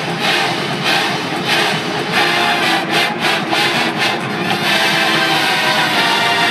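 A marching band playing loudly: a brass hornline holding chords over a drumline and front-ensemble percussion. Sharp drum accents land about every two-thirds of a second, with a quick run of hits around three seconds in.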